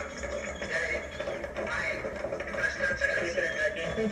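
Television news audio coming through a TV speaker and picked up in the room: indistinct voices over a steady low rumble.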